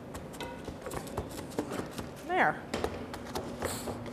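Irregular light knocks and thuds of a hand-held block pounding soft torrone nougat down into paper-lined wooden molds to level it. A short voice-like sound falls in pitch about halfway through.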